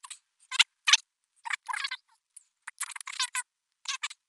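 A man's voice played back several times faster than normal: high-pitched, squeaky and unintelligible, in short chattering spurts with brief gaps between them.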